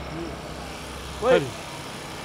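Steady noise of road traffic passing close by, with a low rumble underneath.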